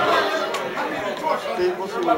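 Spectators chattering, several voices talking over one another.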